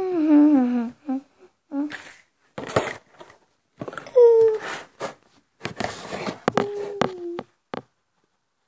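A person humming and making wordless sing-song sounds: a long falling note at the start, a few short hums, and a held note near the end, with clicks and rustles of handling in between.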